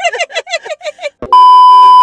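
Women laughing, then a click and a loud, steady test-tone beep that starts abruptly a little over a second in: the television colour-bar test signal, edited in to cut off the answer.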